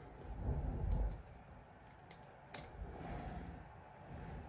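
Faint rustling and small clicks of fingers handling a small transdermal anti-nausea patch and its clear plastic release liner as it is peeled free, with one sharper click about two and a half seconds in.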